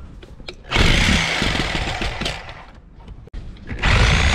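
Electric reciprocating saw with a short metal-cutting blade cutting through the thick rubber sidewall of a large tire. It starts up loudly about a second in, dies away near three seconds, and starts cutting again just before the end.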